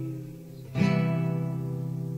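Instrumental passage of a song: acoustic guitar chords, the previous chord fading away and a new one strummed about three quarters of a second in and left to ring.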